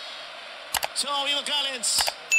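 A man's voice commentating over a steady stadium crowd background, with two sharp mouse-click sound effects, one about three-quarters of a second in and one near the end, from the subscribe-button overlay.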